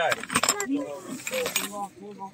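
Glassware and porcelain clinking and jingling as a gloved hand rummages in a cardboard box lined with plastic bubble wrap and lifts out a stemmed glass. Sharp clinks come at the start, and the plastic wrap rustles a second in.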